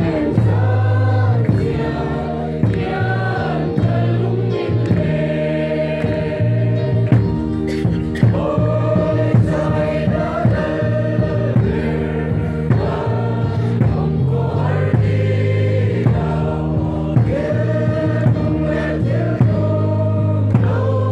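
A large group of men and women singing a Mizo mourning hymn (khawhar zai) together in unison, with a steady beat under the voices.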